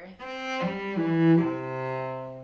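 Cello bowing a descending C major arpeggio in root position, C–G–E–C, four notes stepping down with the last low C held.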